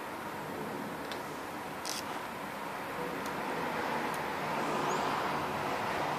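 Steady background noise, swelling a little about four to five seconds in, with a few faint clicks.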